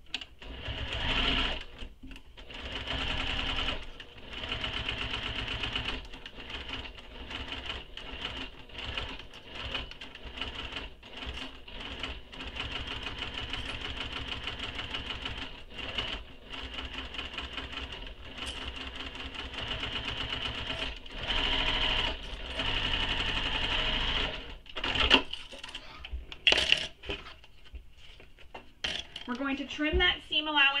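Domestic sewing machine stitching a seam through two layers of vinyl. It runs in stretches of a second to a few seconds with many short stops and restarts. A couple of sharp clicks come near the end.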